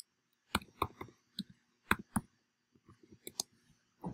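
Typing on a computer keyboard: an irregular run of sharp key clicks, quickening into a faster flurry near the end.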